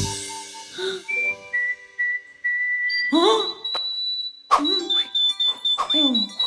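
A cartoon character whistling a slow tune in long, held high notes, with a few short wordless vocal sounds in between.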